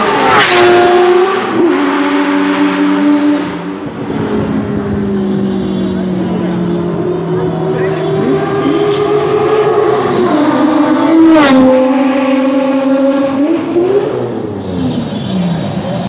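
Mazda RX-7 rotary engines at speed on a race track: a car passes close just after the start, its engine note dropping sharply in pitch, then engine notes rise and fall through gear changes, and another close pass with the same sharp pitch drop comes about eleven and a half seconds in.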